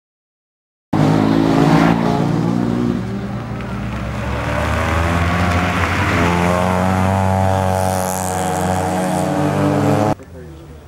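Opel Astra GSi's four-cylinder engine running hard as the car is driven on a sprint course, starting abruptly about a second in. Its pitch dips around three seconds, then climbs steadily from about six seconds as the car accelerates.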